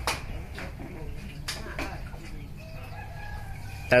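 A rooster crowing faintly in the background during the second half, over a steady low hum, with a few short clicks earlier on.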